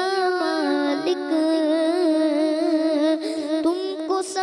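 A boy singing solo into a microphone, drawing out long, wavering held notes in one continuous melodic line.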